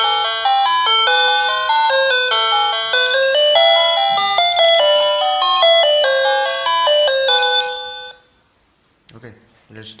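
Wireless doorbell chime unit playing a loud electronic tune of quick stepping notes, set off by a light sensor when the box lid is opened. The tune stops about eight seconds in.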